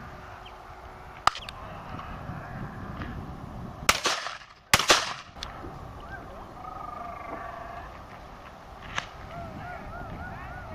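Shotguns firing at driven game birds. There is a sharp report about a second in, then two loud shots about a second apart near the middle, and a fainter shot near the end.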